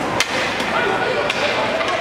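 A single sharp crack of a hockey stick striking the puck about a quarter-second in, with a fainter knock about a second later, over the chatter and shouts of an ice rink.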